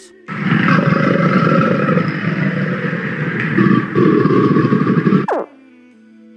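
A crocodile growling: one long, low, rough growl lasting about five seconds that cuts off abruptly. Soft background music plays underneath, and a short falling swoop comes just after the growl ends.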